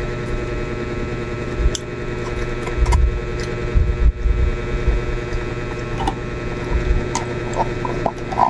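A steady mechanical hum runs throughout, with a few light clicks of a metal fork against a styrofoam food container and some soft low thumps around the middle.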